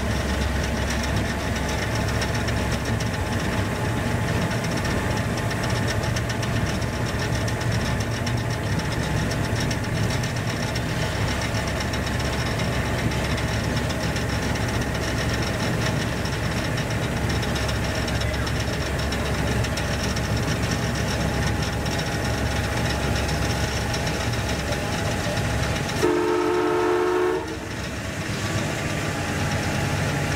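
EMD G12 (Sri Lanka Railways Class M2) locomotive's two-stroke V12 diesel engine running steadily while under way. Near the end, the locomotive's horn sounds one blast of several tones together, lasting about a second and a half.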